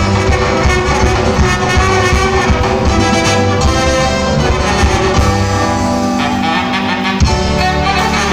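Brass band music with a steady beat, accompanying a carnival dance.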